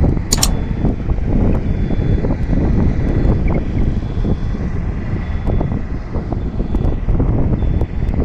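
Loud, gusty low rumble of wind buffeting the microphone in dusty, windy weather, with a sharp click about half a second in.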